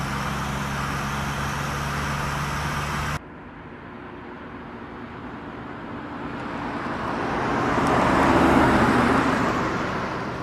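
A steady car-cabin drone of engine and road noise, cut off abruptly about three seconds in. Then a car approaches and passes, its engine and tyre noise swelling to a peak about eight seconds in and fading as it drives away.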